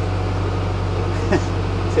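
Wide-beam canal boat's engine running steadily under way, a low even hum. A short laugh comes at the very end.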